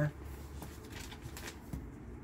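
Faint rustling of paper as Bible pages and a spiral notebook are handled and shifted on a table, with a few light soft ticks.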